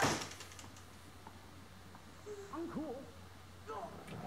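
A sharp click at the very start, then low room tone with a few faint, brief voice sounds with bending pitch about halfway through.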